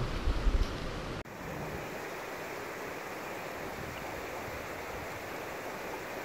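Wind buffeting the microphone for about the first second, then an abrupt cut to a steady, even rushing noise of the outdoors.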